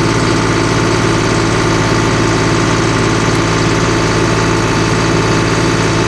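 John Deere CRDI tractor's common-rail diesel engine idling steadily. It runs with no warning siren, its faulty diesel temperature-and-pressure sensor freshly replaced.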